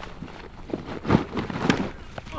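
Rustling and a few dull thumps as a person pulls off rubber chest waders and scrambles on the grass. The sounds come in short bursts about a second in and again near the end.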